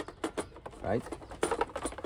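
Several sharp plastic clicks and knocks as the top cover of a Worx Landroid WR155E robotic mower is lifted off its chassis.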